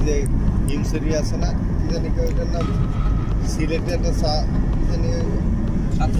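Steady low rumble of a moving road vehicle heard from inside, with voices talking now and then over it.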